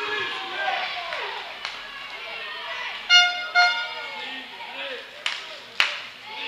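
Two short horn blasts about half a second apart, over players' voices echoing in a sports hall. Two sharp thumps follow near the end.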